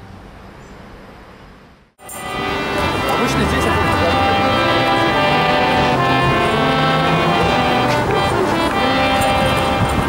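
Hand-pumped harmonium playing held reed chords, many steady notes sounding together. It comes in suddenly about two seconds in, after a quieter stretch of background noise.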